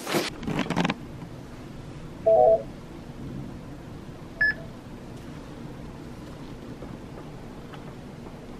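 Electronic beeps from a digital fingerprint-capture station as fingers are scanned. A short two-tone beep sounds about two seconds in, then a brief higher beep a couple of seconds later, each typical of the software confirming a capture, over a low steady room hum.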